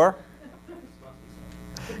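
Steady low electrical buzz, a mains-type hum, heard in a pause in a man's speech; his voice trails off right at the start.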